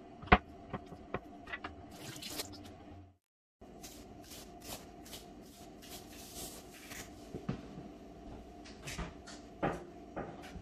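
A kitchen knife knocks sharply on a wooden cutting board as raw fish is cut, several knocks in the first few seconds. Then comes a run of short hissing rattles as a seasoning shaker is shaken over the fish in a glass bowl, with a couple of knocks near the end.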